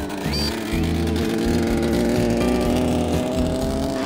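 Small engine of a homemade novelty vehicle running as it drives, its pitch rising slowly, over background music.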